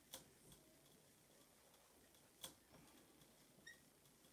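A few faint taps and clicks of a dry-erase marker drawing on a whiteboard, the loudest about two and a half seconds in, over near silence.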